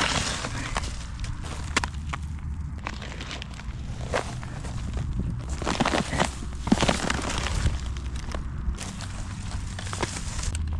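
Footsteps crunching over dry grass and litter, with irregular scrapes and rustles as pieces of discarded rubber are grabbed and flipped over.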